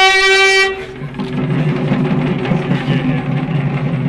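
A horn-like wind instrument holds one loud, steady note that stops about a second in. A busy, droning mix of music and voices follows.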